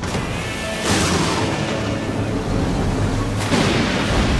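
Booming storm crashes of a hurricane, laid under background music: a loud crash about a second in and another near the end.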